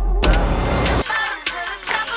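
A sports car engine running with a deep low rumble for about a second, cutting off suddenly. Music follows, with sharp clicks and pitched lines.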